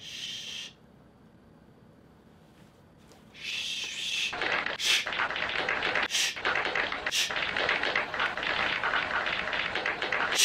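A person shushing: a short breathy "shh" at the start, another about three and a half seconds in, then a long run of loud, hissing, crackling mouth noise to the end.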